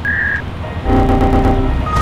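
A short high beep, then a steady held tone lasting under a second, then a brief blip near the end, most likely electronic sound effects.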